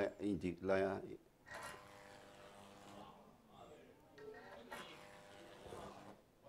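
A Jacob's ladder, driven by a 220-to-4,000-volt step-up transformer, buzzing steadily as its electric arc burns between the wires. The buzz sets in about a second and a half in, after a man's brief speech.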